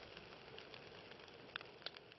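The faint, fading tail of a fire-and-explosion intro sound effect: a low hiss dying away, with a few soft crackles near the end.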